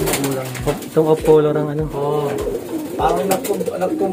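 Racing pigeons cooing in the loft cages: several overlapping, drawn-out coos.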